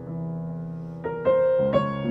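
Solo piano playing slowly: a held chord rings on, then new notes are struck about a second in and again near the end.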